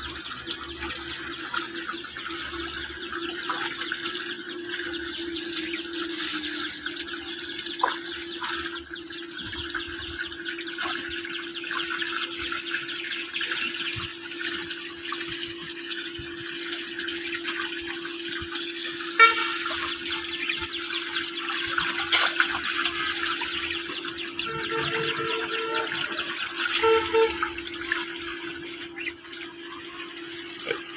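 Water gushing from a plastic pipe into a shallow concrete tank, a steady splashing rush, with hands sloshing through the water now and then and one sharp splash about two-thirds of the way through. A steady low hum runs underneath.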